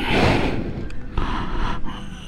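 Yamaha R1 sport bike rolling slowly at low revs with its engine rumbling softly, under rushing wind noise on the microphone that is strongest at the start and eases off.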